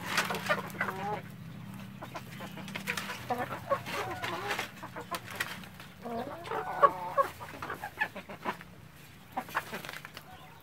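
Domestic hens clucking in short runs of calls: about a second in, again around four seconds and most strongly around seven seconds in, with sharp clicks scattered between.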